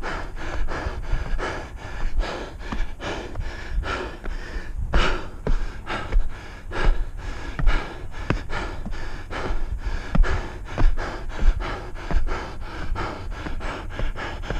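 A runner breathing hard and fast in rhythmic gasps, about three a second, while running up steep stairs, with dull footfalls on the wooden ties.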